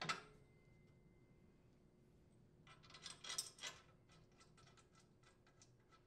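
Faint handling sounds at a chipper shredder's impeller: a short knock at the start as the wooden 2x4 support is set against the housing, then about three seconds in a brief run of light metal clinks and ticks as the center mounting bolt is fitted into the impeller hub.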